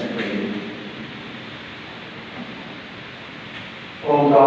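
A voice ends a word in the first half second, then a steady hiss of room noise fills a large church during a pause in the Mass.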